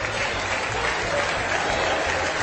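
Audience applauding in a pause of a recorded comedy dialogue.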